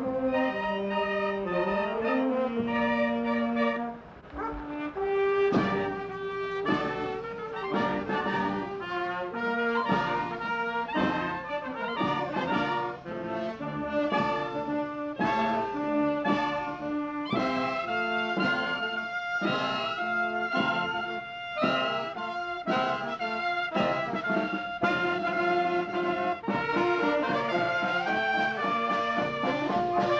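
Marching wind band of trumpets, clarinets, saxophones and tubas playing a tune while walking, with a short drop in level about four seconds in.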